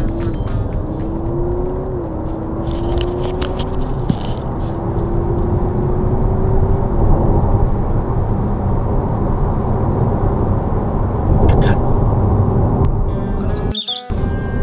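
Honda Civic e:HEV hybrid accelerating at full throttle in Sport mode, heard inside the cabin over steady road rumble. The engine note, with its simulated sound, rises in pitch, then drops back about two, four and seven seconds in, like stepped gearshifts.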